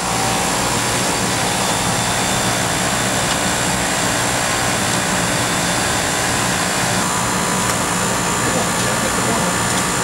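Heat pump outdoor unit running steadily in its defrost cycle: an even mechanical hum and rushing noise with a low steady drone.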